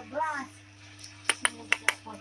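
Four short, sharp clicks in quick succession in the second half, coming in two close pairs.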